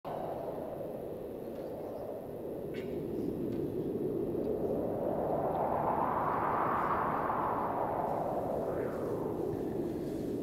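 Intro whoosh sound effect: a swell of noise that rises in pitch and loudness to a peak about six or seven seconds in, then sinks away.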